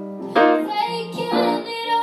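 A boy singing a pop-funk song into a microphone, accompanied by grand piano chords. His voice comes in short sung phrases, about one a second.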